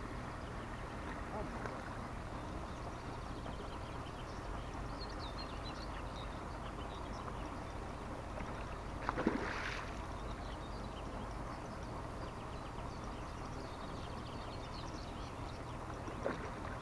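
Steady low wind rumble on the microphone over open-air pond-side ambience, with one short splash of water in the shallows about nine seconds in.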